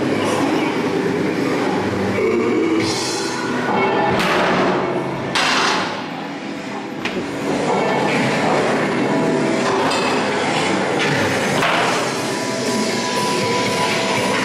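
Loud haunted-maze soundtrack: a dense rumbling, train-like industrial din mixed with music. Several sharp hissing bursts come about three to five seconds in and again near seven seconds.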